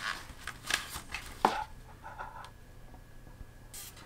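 Hands handling a cycling helmet and a pair of sunglasses: light plastic taps and clicks, with one sharper click about a second and a half in. A soft scrape follows, then a brief rustle near the end.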